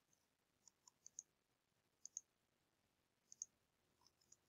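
Near silence broken by a few faint, short computer mouse clicks, mostly in quick pairs of press and release, around one, two and three and a half seconds in.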